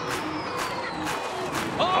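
High-pitched electric motor whine of a Formula E race car, falling steadily in pitch, over background music.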